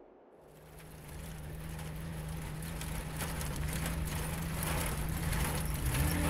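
Open-top Jeep driving: engine running with wind and road noise. It fades in about half a second in and grows steadily louder.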